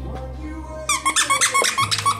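Squeaker in a plush dog toy squeaking rapidly and repeatedly as a puppy bites it, starting about a second in and loud. Background music with steady low notes plays underneath.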